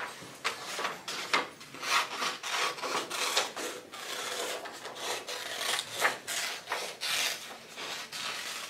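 Scissors cutting black construction paper in a run of irregular snips, with the sheet rustling as it is turned between cuts.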